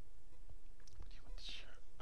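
A man whispering under his breath in the second half, after a few faint clicks, over a steady low electrical hum.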